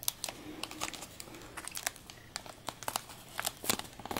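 Reflectix foil-faced bubble insulation and metallic foil tape crinkling under the fingers as the tape is folded over the edge, in quiet, irregular small crackles.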